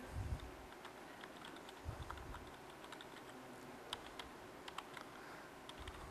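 Computer keyboard typing, faint: a string of irregular key clicks as a username and password are entered. Two low thumps come in the first couple of seconds.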